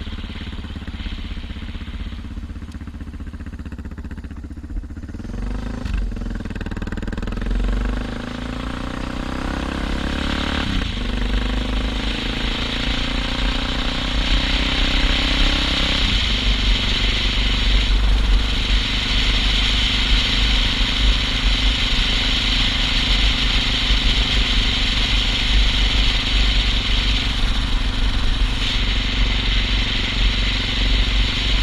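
Suzuki DR650's single-cylinder four-stroke engine pulling away. It rolls slowly at first, then accelerates about five seconds in, the note rising and dropping back at gear changes around 11 and 16 seconds in, then runs steadily at cruising speed. Wind rushing over the helmet-mounted microphone builds as speed picks up.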